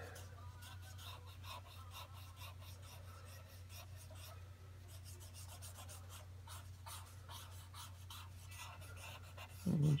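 Faint, scratchy strokes of a drawing tool shading on toned tan sketch paper, many short strokes in quick succession, over a steady low hum.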